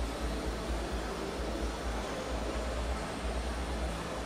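Steady background noise with a continuous low rumble and an even hiss, and no distinct event: the room tone of a large hall.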